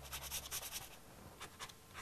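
Pastel stick scratching across paper in short strokes, faint: a quick run of strokes in the first half second, then a few more strokes in the second half.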